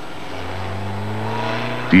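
Renault 5 car engine running under steady throttle, its pitch and loudness rising slightly.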